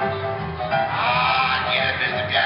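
Music with a steady, held accompaniment. Under a second in, a higher wavering line with bending pitch comes in over it.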